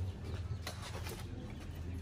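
Quiet background of an outdoor crowd waiting in a pause, with a steady low rumble and a few faint clicks.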